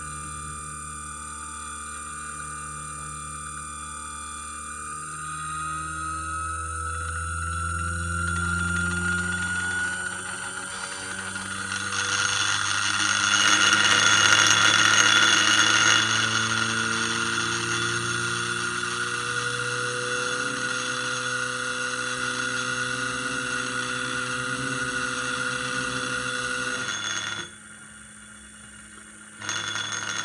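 Stepper motor with a 2.5-inch pulley running a slow speed ramp with no active damping. Its whine rises gradually in pitch, growing louder and rough in the middle of the ramp as it passes through the motor's resonance near 106 full steps per second. The running sound then holds steady and cuts off sharply near the end.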